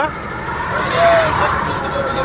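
Cummins diesel engine of a Tata Signa 5530.S truck running steadily, heard from inside the cab. It is running again after a broken earthing wire, the cause of its stalling on the road, was repaired.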